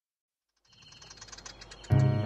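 Silence, then about two-thirds of a second in, cartoon birdsong fades in as a rapid run of faint chirps growing louder. Loud children's song music starts right at the end.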